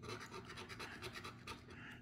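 A yellow plastic coin scratcher scraping the latex coating off a paper scratch-off lottery ticket in rapid short strokes.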